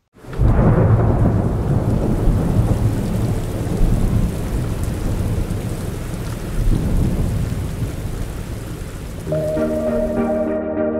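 Thunderstorm sound effect in the performance soundtrack: a thunderclap breaks suddenly just after the start and rolls on as a long low rumble over steady rain, slowly fading. Held synth chords come in near the end.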